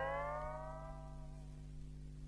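The last guitar note of a rockabilly recording slides up in pitch and fades out in the first second and a half. A faint, steady low hum is left under it.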